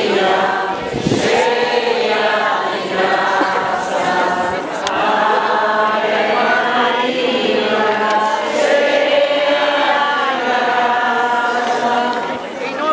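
A crowd singing a religious hymn together, many voices holding slow, drawn-out notes in phrases of a few seconds each.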